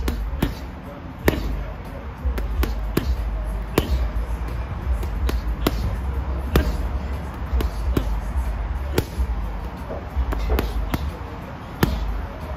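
Boxing gloves landing on a leather heavy bag in punch combinations of jab, cross and hooks, including hooks to the body: sharp thuds in irregular quick clusters. A steady low rumble runs underneath.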